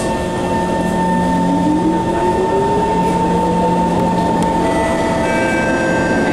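MRT train heard from inside the car: a steady rumble of running noise with a constant hum. An electric-motor whine rises in pitch over about three seconds as the train picks up speed.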